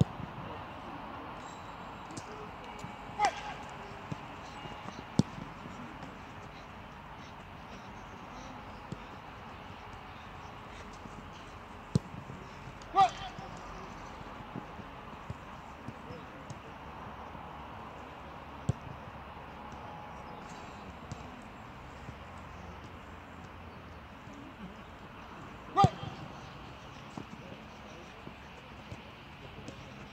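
Steady outdoor background of a football training pitch with faint, indistinct voices, broken by a handful of short, sharp knocks of footballs being kicked; the loudest come about three, thirteen and twenty-six seconds in.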